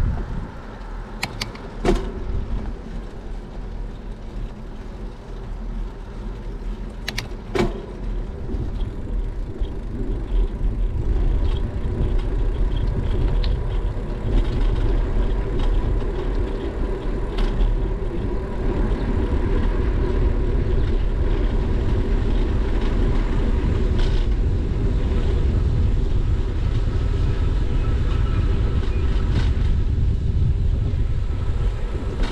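Wind rushing over a bicycle-mounted GoPro's microphone, with tyre noise on asphalt, as the bike is ridden along a street. It grows louder over the first ten seconds or so as the bike gains speed, then holds steady. There are a few sharp clicks in the first eight seconds.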